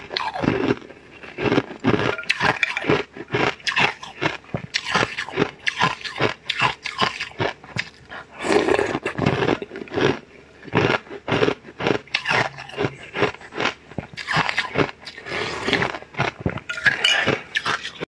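Close-miked eating: chewing and crunching mouthfuls of dark purple cubes, with many short crackling crunches in irregular runs.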